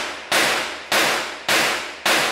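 Gunshots fired one at a time at a steady pace, three shots about two-thirds of a second apart. Each shot is sharp and loud and rings on in the echo of an indoor shooting range.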